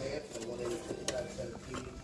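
Low, indistinct voices in a store, with a few light clicks from a plastic blister pack of handlebar grips being handled in the second half.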